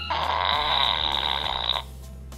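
Novelty Grim Ripper butt-faced reaper toy from the Buttheads line letting out one raspy fart sound about 1.7 seconds long, which cuts off suddenly near the end.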